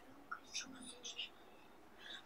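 A quiet pause with a few faint, short whispered sounds from a person about half a second to a second in.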